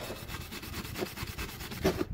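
Steel wire brush scrubbed quickly back and forth over a rusty cast-iron exhaust manifold from a Jaguar XJ6, an even run of fast scratchy strokes. The brushing is knocking loose rust off the manifold before its mating surface is flattened by hand.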